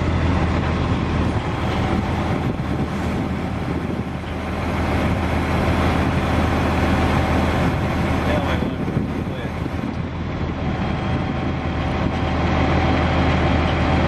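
Diesel engine of a Kenworth T300 rollback truck, a Cummins 8.3 L inline-six, running steadily at a low, even pitch while the truck's hydraulic wheel-lift is worked, getting slightly louder near the end.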